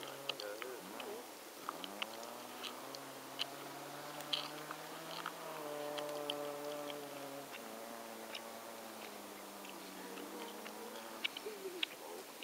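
Distant car engine revving up and down. Its pitch climbs about two seconds in, holds, then drops about seven and a half seconds in.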